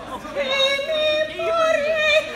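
A woman singing solo in an operatic soprano with a wide vibrato. After a brief breath at the start she holds a line of notes that step upward in pitch.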